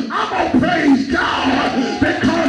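Preacher shouting into a microphone in a drawn-out, sing-song cadence, with congregation members calling out along with him.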